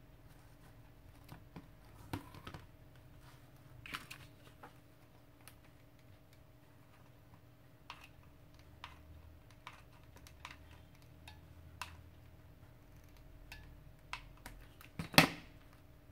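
Scattered light clicks and taps from handling a hot glue gun while gluing a burlap spine to a cover board. Near the end comes one louder knock as the plastic glue gun is set down on the wooden desk.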